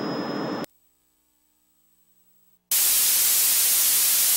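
Television static hiss sound effect, steady and loud, starting suddenly about two-thirds of the way in. A shorter burst of noise with a thin high whistle comes at the very start and cuts off in under a second.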